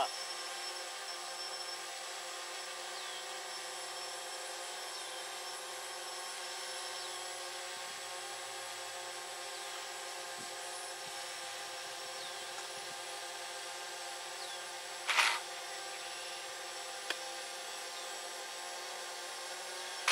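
Steady whine of DJI Phantom and DJI Spark quadcopter propellers hovering and flying, heard as many steady tones at once. Faint short falling chirps recur throughout, and a brief louder noise comes about fifteen seconds in.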